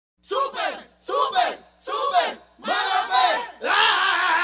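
Several voices shouting together in four short bursts, with no beat behind them, then a long held shout starting near the end: the shouted intro of a reggaeton track.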